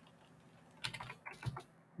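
Faint typing on a computer keyboard: a quick run of keystrokes that begins about a second in.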